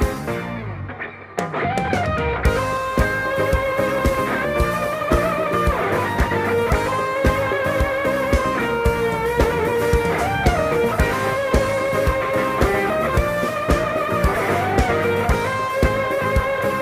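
Live band playing the instrumental opening of a Hindi pop ballad: an electric guitar carries a sustained, wavering melody over a steady drum beat and keyboard. The sound drops away briefly about a second in before the band comes in fully.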